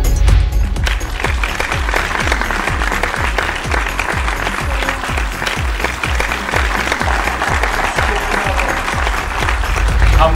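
Audience applauding over background music with a steady bass beat of about two beats a second.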